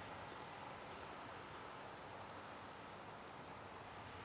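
Faint, steady running of an OO gauge model train: the Bachmann LMS 10000 diesel's motor and the wheels of its seven coaches rolling on the track, running smoothly.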